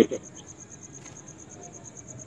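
Insect chirping: a steady, high-pitched pulsing about six or seven times a second over a low background hiss.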